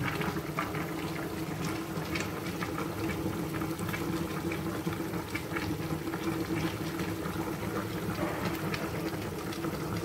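Pot of smoked pork ribs boiling steadily on a stovetop, a continuous bubbling with a steady low hum beneath it.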